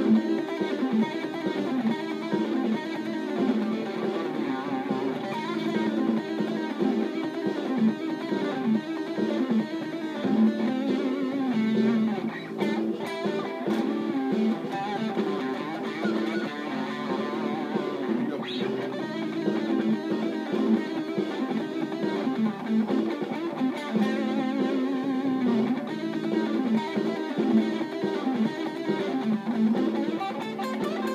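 Electric guitar playing a blues-rock lead lick in A minor pentatonic, with fast note runs and frequent string bends, over a rhythm backing track.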